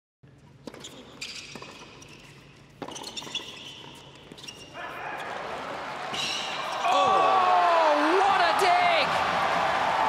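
Tennis ball struck by rackets a few times during a doubles rally in a stadium. Then the crowd noise swells, breaking into loud cheering and shouts about seven seconds in.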